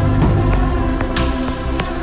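Background film score: steady sustained notes, with a low hit at the start and scattered light percussive ticks.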